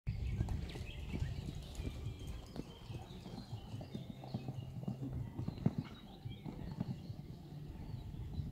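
Hoofbeats of a horse cantering on a sand arena: irregular, fairly soft thuds.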